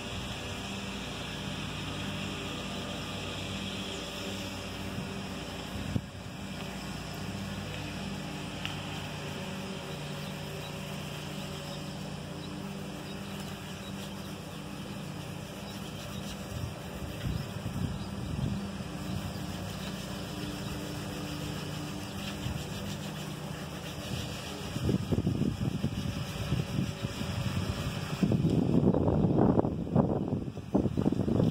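A steady low engine hum with wind on the microphone. Louder, irregular rustling noise comes in near the end.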